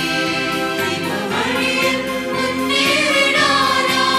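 A mixed church choir of women's and men's voices singing a hymn together in long held notes.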